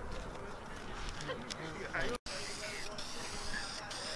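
Aerosol can of Dupli-Color vinyl and fabric spray paint hissing as it is sprayed onto a soft top. After a break about two seconds in, the hiss comes in long passes with short pauses between them.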